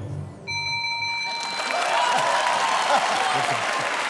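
Studio audience applause with some cheering, swelling in a second or so after a single bell-like chime tone that rings and fades about half a second in.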